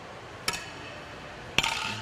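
Two sharp clinks of kitchenware about a second apart, the second followed by a brief rattle.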